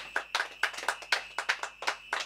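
A small group of people clapping their hands, with sharp, uneven claps coming several a second.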